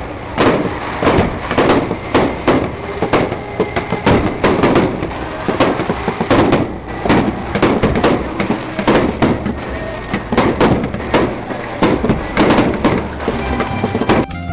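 Fireworks going off: a rapid, irregular series of sharp bangs, about two or three a second, over a continuous crackling background. Just before the end, plucked-string music comes in.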